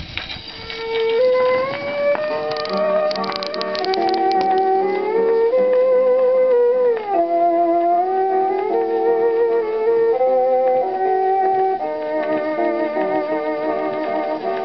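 Instrumental introduction of a 78 rpm Harmony record of a country song, played acoustically through the horn of an EMG gramophone. A melody line slides up and down in pitch over a lower accompaniment, with the limited top end of an old acoustic record.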